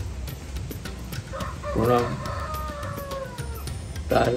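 A rooster crowing, starting about a second and a half in: a short loud opening followed by one long, falling drawn-out note.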